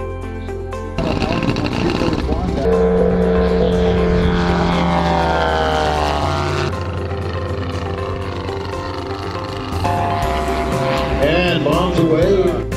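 Engine of a large radio-controlled P-47 Thunderbolt model running at high power as it flies past, its pitch falling steadily as it goes by, with a second surge of engine sound near the end. Background music plays underneath.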